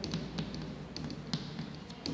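Chalk tapping and scratching on a blackboard as short labels are written: a quick, irregular run of small sharp clicks.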